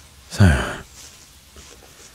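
A man's deep voice lets out a single breathy, sighing "so" about half a second in, falling in pitch; the rest is quiet.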